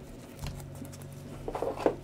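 Trading cards being flipped and slid against each other by gloved hands: a soft knock about half a second in, then quiet rustles and clicks of card edges near the end, over a faint steady low hum.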